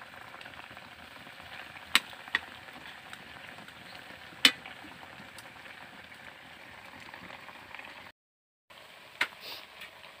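Fish stewing in coconut milk in a pan over a wood fire, simmering with a steady hiss. A few sharp snaps cut through it, the loudest about four and a half seconds in. The sound drops out completely for about half a second just after the eighth second.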